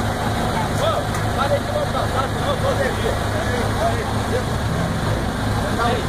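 An off-road vehicle's engine running steadily at low revs, with people's voices calling out over it.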